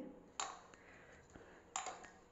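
A hand working dry flour in a steel bowl: two short, faint scraping rustles, one about half a second in and one near the end.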